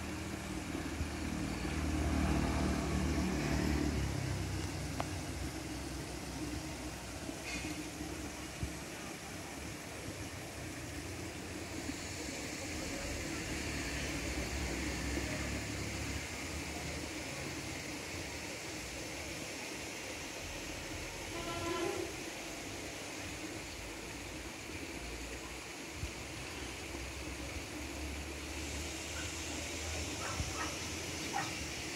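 Outdoor background noise with a low rumble, strongest in the first few seconds, and a faint high hiss coming in around twelve seconds.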